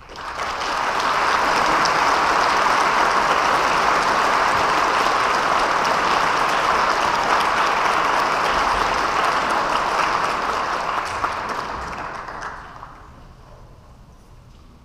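Audience applause in a concert hall, breaking out suddenly, holding steady as dense clapping for about twelve seconds, then dying away near the end.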